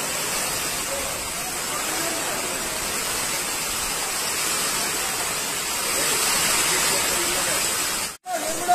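Heavy monsoon rain and floodwater rushing through a street: a steady, loud rushing noise that stays even throughout.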